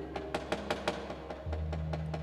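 A dalang's wooden knocker (cempala) tapping on the wooden puppet chest at a quick, even rate of about five knocks a second. About one and a half seconds in, a low steady tone comes in beneath the knocks.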